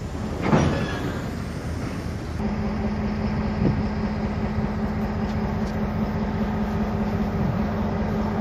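A freight train of empty wagons rolling past on the track, with one loud brief sound sweeping down in pitch about half a second in. A steady low hum joins about two and a half seconds in.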